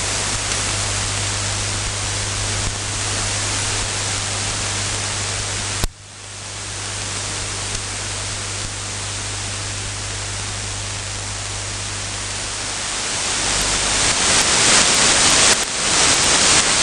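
Hiss from an AM receiver on 1647 kHz medium wave, carrying the pirate station's unmodulated carrier with a low steady hum. A sharp click about six seconds in briefly drops the hiss, which then climbs back. Near the end the hum stops and the static grows louder and crackly as the carrier signal fades.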